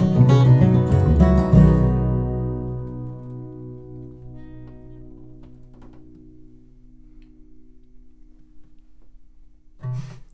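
Two acoustic guitars and an upright bass play the last bars of a country-bluegrass song and end on a final chord about one and a half seconds in. The chord rings on and slowly fades away over several seconds.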